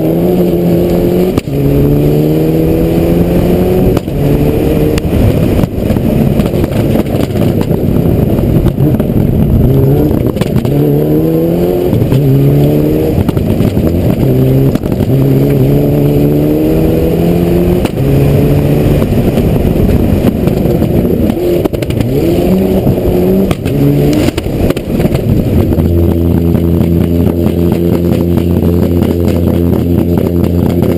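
Rally car engine pulling hard through the gears, the revs climbing and dropping at each shift again and again, with a constant rattle over it. Near the end the engine settles into one steady pitch.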